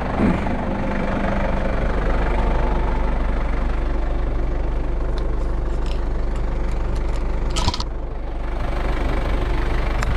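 Diesel tractor engine idling steadily. A single sharp click about three-quarters of the way through.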